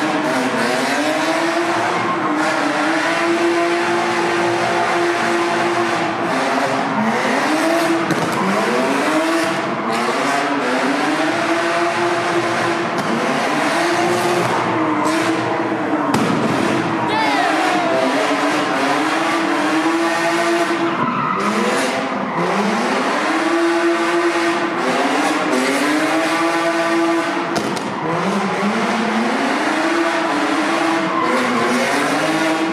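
Car engine revving up and down over and over, roughly every two seconds, over a steady hiss of tires squealing and skidding on pavement.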